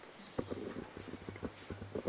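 Microphone handling noise: a quick, irregular run of knocks and rubs, with a low hum coming in about half a second in.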